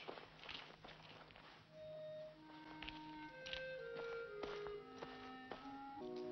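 Faint footsteps in the first two seconds, then quiet orchestral film score comes in: soft held notes that step from one pitch to the next, building to several notes at once near the end.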